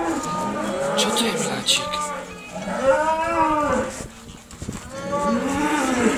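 Cattle mooing: several drawn-out moos that rise and fall in pitch, the longest in the middle.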